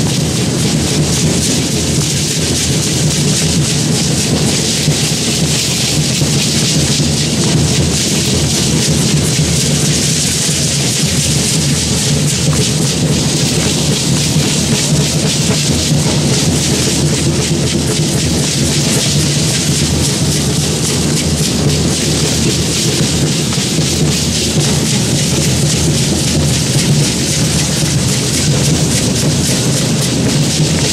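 Matachines dance sound: a drum beating steadily under the dense, continuous hiss of many dancers' rattles shaken together.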